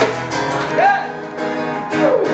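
Acoustic guitar being strummed in a live band setting, with a short voice rising and falling about a second in.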